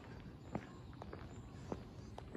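Faint footsteps of a person walking on a paved sidewalk, about two steps a second, over a steady low background hum.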